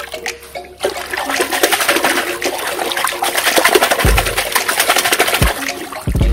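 Carbonated soft drinks in a toilet bowl fizzing hard after Mentos are dropped in: a dense crackling hiss that builds about a second in. Near the end there are low thuds as a hand plunges into the foaming liquid.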